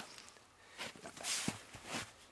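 Split halves of a log being handled: a short scraping rustle, then a single wooden knock about one and a half seconds in as a half is set down on the chopping block.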